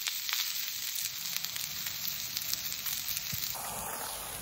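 Beef burger patties and chopped red onion sizzling in a frying pan on a portable gas stove, a steady hiss with faint small crackles. The sound changes abruptly near the end.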